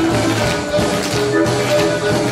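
Music accompanying a stage dance number, with sharp rhythmic taps of the dancers' heeled shoes striking the stage in time with the beat.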